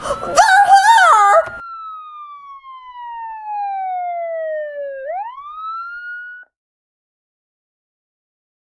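Police siren wail: a single tone that falls slowly in pitch for about four seconds, then sweeps quickly back up and cuts off suddenly about six seconds in. Voices are heard over its opening.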